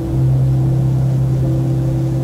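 Background music: a sustained low chord, like a keyboard pad, held steady under the pause, with one of its notes changing about a second and a half in.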